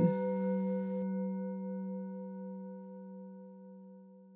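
A singing bowl ringing out and slowly fading: a low hum with a few higher overtones that die away first, one of them wavering slightly.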